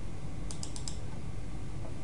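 Four quick, faint clicks of computer keyboard keys about half a second in, over a steady low background hum.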